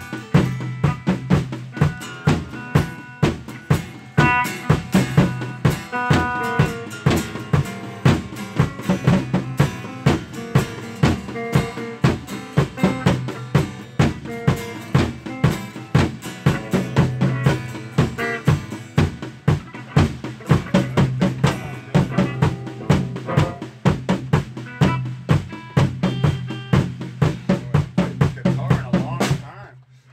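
A band's song with a drum kit playing a steady, fast beat of snare and bass drum hits over a held bass note and guitar. The music stops abruptly near the end.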